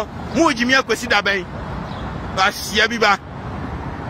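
A man speaking in two short bursts over a steady low rumble of city street traffic.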